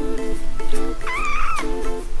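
A 22-day-old kitten mewing once about a second in: a single high call just over half a second long that rises, holds and falls away, over background music.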